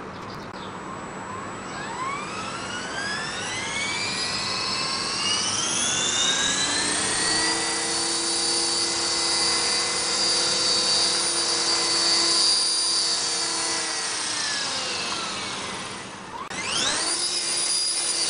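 Esky Belt CP electric RC helicopter's motor and rotor whining as they spool up over several seconds to a steady high pitch. The whine winds down, then quickly spools up again near the end.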